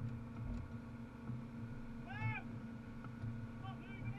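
Rally car engine idling, heard from inside the cabin while the car stands still. About two seconds in there is one short, high squeak that rises and falls in pitch.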